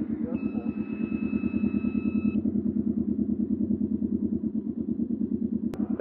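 Can-Am Ryker 600's Rotax twin-cylinder engine idling after a restart, with an even low pulsing. A steady electronic tone sounds for about two seconds early on, and a single click comes near the end.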